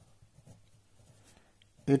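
A pen writing on ruled notebook paper: faint scratching as a few letters are written. A man's voice starts near the end.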